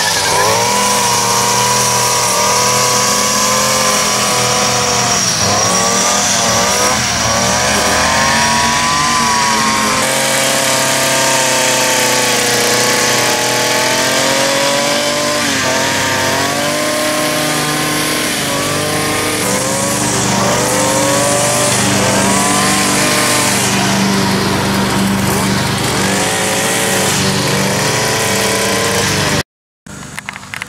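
Stihl FS 56 RC two-stroke gas string trimmer running at high throttle while cutting grass. Its engine pitch repeatedly sags and climbs again as the throttle is eased and squeezed. The sound cuts off suddenly just before the end.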